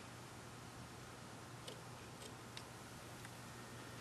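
Quiet shop room tone with a steady low hum and a few faint small clicks, from steel digital calipers being handled and set against the aluminium workpiece.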